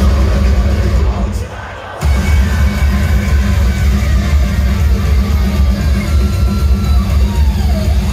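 Rock band playing live through an arena PA, loud and bass-heavy on a phone microphone. About a second and a half in the music drops out briefly, then comes back in at full force.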